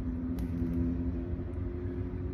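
Steady low mechanical hum with a rumble underneath, holding a few steady pitches.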